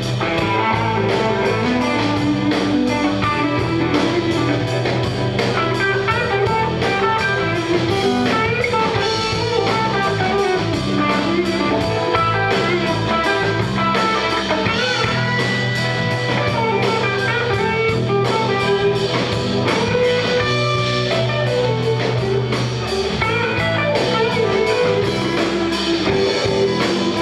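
Live blues-rock band playing: electric guitars over bass guitar and a steady drum beat, with a guitar line bending a held high note about halfway through.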